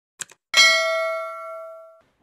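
Subscribe-animation sound effects: two short clicks, then about half a second in a bright notification-bell ding that rings on and slowly fades.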